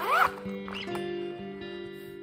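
Zipper of a plastic pencil case being pulled open in two quick strokes, each rising in pitch; the first, just after the start, is the louder. Soft background music runs underneath.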